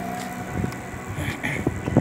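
Open-air street ambience on a car-free city avenue: wind on the microphone and passing bicycles, with faint music playing in the background.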